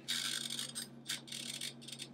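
Toaster oven's mechanical timer dial being turned to set 20 minutes, giving a run of irregular clicks.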